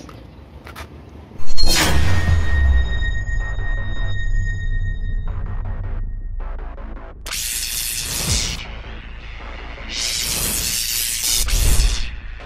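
Cinematic trailer-style sound effects: a sudden booming hit about a second and a half in, with a deep rumble and ringing tones under it, then two loud whooshing swells, each ending in a falling low boom.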